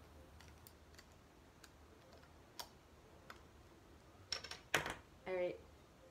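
Metal bottle opener clicking against the crown cap of a glass beer bottle a few times, then a cluster of louder sharp snaps about four and a half seconds in as the cap is pried off. A brief vocal sound follows just after.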